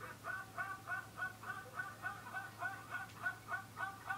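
A man's high-pitched, rhythmic laugh from a viral laughing video, a fast gasping 'hee-hee' repeated about four times a second without a break, sounding almost like a turkey gobbling.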